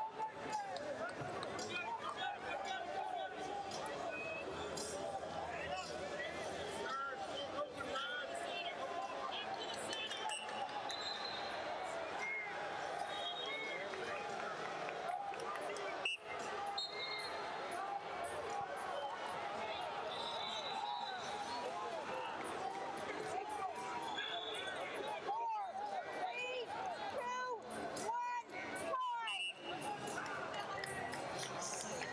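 Many voices at once in a large arena: spectators and coaches calling out and talking over one another around wrestling mats.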